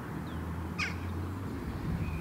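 A single short, harsh bird call about a second in, over a low steady outdoor rumble.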